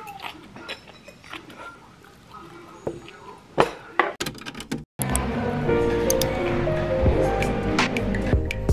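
Small clinks and clicks of metal chopsticks against bowls and quiet chewing during a meal. About five seconds in, after a brief dropout, background music starts, with sustained notes over a low bass.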